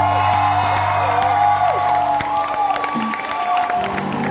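Live pop-rock band with guitars, keyboard and drums playing held, ringing notes; the low notes stop about three seconds in and the music thins out.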